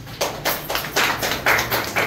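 A small group of people clapping, a quick, even beat of about four claps a second that starts just after the beginning.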